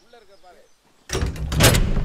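A brief faint voice, then about a second in a sudden loud bang with a deep rumble, like a door crashing, that carries on as a dramatic film-soundtrack hit running into music.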